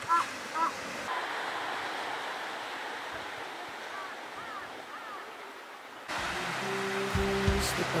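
Sea surf washing onto a rocky shore as a steady rush, with a few short high chirps near the start and again about four seconds in. Background music comes in about six seconds in.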